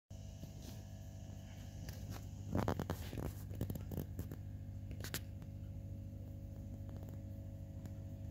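Handling noise: a cluster of rustles and clicks about two and a half to four seconds in and a single click about five seconds in, over a steady low hum.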